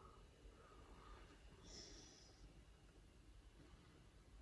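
Near silence: room tone, with a faint brief hiss about two seconds in.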